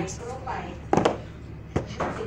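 Two sharp knocks as a small cardboard tissue box is handled on a hard counter: a loud one about a second in and a lighter one near the end.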